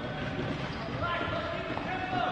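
Futsal being played on an indoor court: the ball thudding and bouncing off feet and the hard floor, with players' voices calling out.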